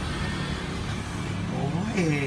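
A steady low motor hum, with a voice giving a short exclamation near the end.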